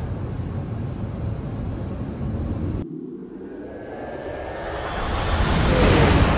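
Elevated Express people-mover tram arriving at the platform: a rush of running noise that swells steadily over the last couple of seconds and is loudest as the car pulls alongside. Before it, a steady low outdoor rumble, with an abrupt cut about three seconds in.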